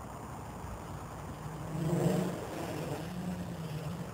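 Electric motors and propellers of a radio-controlled multirotor buzzing in flight as a steady hum. The hum swells louder about two seconds in, then settles back.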